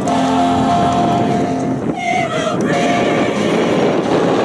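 A mixed group of carolers singing a Christmas carol in parts, holding long notes and moving to a new chord about halfway through.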